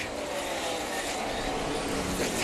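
V8 engines of NASCAR Nationwide stock cars running at racing speed: a dense, steady engine drone.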